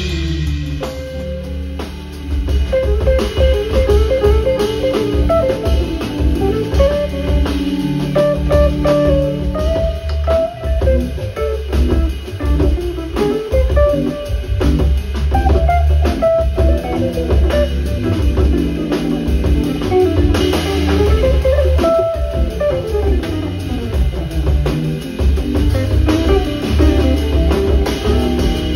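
Live jazz groove played by a band: an archtop electric guitar plays moving single-note melodic lines over organ, congas and a drum kit with a steady low bass. The music thins briefly about two seconds in, then picks up again.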